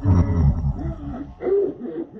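A deep, distorted vocal roar, loudest in the first half-second and then fading, followed by a shorter voice-like sound about one and a half seconds in.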